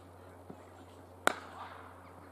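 A cricket ball struck by a bat: one sharp crack about a second and a quarter in.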